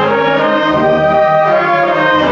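Student concert band playing: woodwinds and brass holding full, loud chords whose notes shift as the music moves on.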